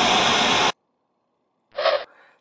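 Television static hiss, the white-noise 'snow' of an untuned TV, cutting off suddenly under a second in. After about a second of silence, a brief pitched sound comes near the end.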